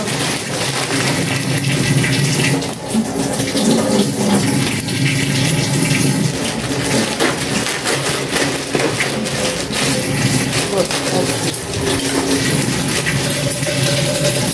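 Kitchen tap running into a sink during dishwashing, a steady rush of water with a few light knocks.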